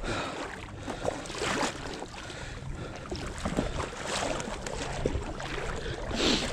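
Shallow water swishing and lapping in irregular surges every second or so as something moves through it.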